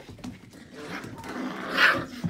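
Six-week-old Sheepadoodle puppies playing and wrestling, with a short, loud puppy vocalisation near the end.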